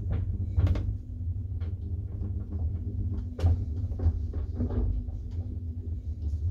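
Old traction elevator car travelling in its shaft: a steady low hum with irregular clicks and knocks, the sharpest about three and a half seconds in.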